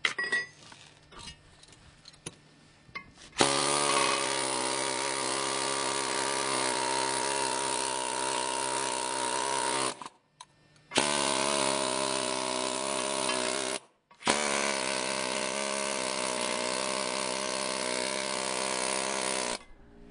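Pneumatic air chisel hammering on a concrete block to knock off the rough bumps and slag on its bottom edge. It runs in three long steady bursts with two brief pauses, after a few light handling clicks in the first seconds.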